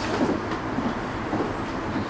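A steady rumble of a passing vehicle, with faint higher tones drifting through it.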